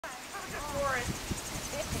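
People's voices talking, with two or three soft thuds from a horse's hooves on the dirt trail around the middle.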